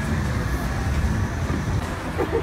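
Street traffic: a steady low rumble of vehicle engines.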